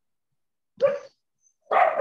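A dog barking twice, a short bark and then a longer, louder one, picked up through a participant's microphone on a video call.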